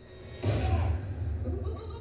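Horror movie trailer soundtrack: a sudden loud hit with a deep low rumble about half a second in, and a wavering voice over it.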